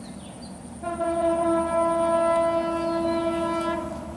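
Horn of an approaching Bangladesh Railway diesel locomotive sounding one long, steady-pitched blast of about three seconds, starting about a second in.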